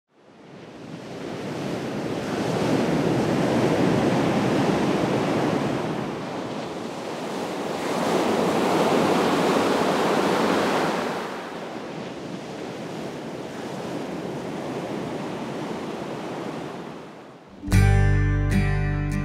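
Ocean surf washing over rocks, fading in from silence and swelling twice before ebbing. Near the end an acoustic guitar strum begins.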